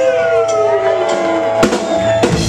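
Live rock band intro: sustained electric guitar notes sliding slowly down in pitch over a steady held tone, with one drum hit near the end.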